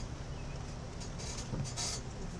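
Outdoor background noise with a steady low hum, and a brief hiss near the end.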